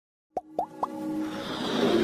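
Three short cartoon-like plop sound effects in quick succession, followed by a swelling musical build-up that grows louder, the sound of an animated intro sting.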